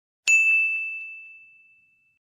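A single bright chime ('ding') sound effect for a title card: struck once about a quarter second in, ringing as one clear high tone that fades away over the next couple of seconds.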